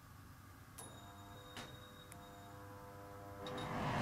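A few faint knocks and clicks with a light ringing tone hanging after them, then a swelling whoosh near the end leading into music.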